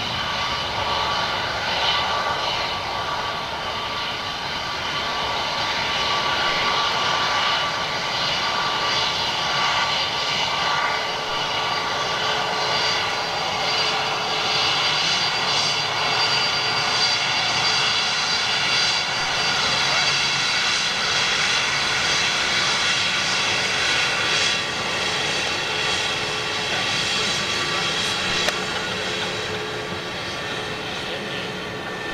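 CFM LEAP-1A turbofans of a taxiing Airbus A320neo-family jet running at taxi power: a steady jet whine made of several high tones over engine rush, a little louder after the first few seconds. The sound is likened to a small Boeing 777.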